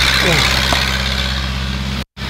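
Steady low mechanical hum, like an engine running at idle, with a single faint knock about three-quarters of a second in.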